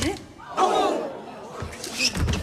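A loud shouted yell from a voice, about half a second in, over the noise of a crowd in a gym, followed by a few thuds near the end.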